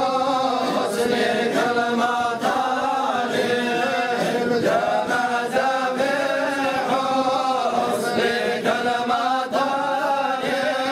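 A group of men chanting together in sustained, unison phrases: a Sufi devotional chant (dhikr) of the Darqawiya order.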